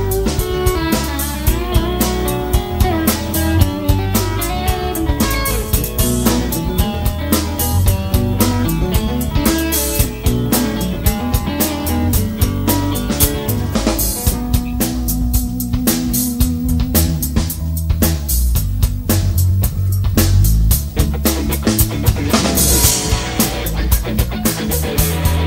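Live rock band playing an instrumental passage, taken straight from the mixing desk: a busy drum kit with snare and bass drum under electric guitar and bass, a held note in the middle and a cymbal wash near the end.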